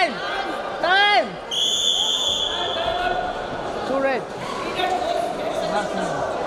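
Short, loud shouted calls from the mat side, each rising then falling in pitch, then a steady referee's whistle blast of about a second and a half, starting about a second and a half in, that stops the ground wrestling. Another shout follows about four seconds in.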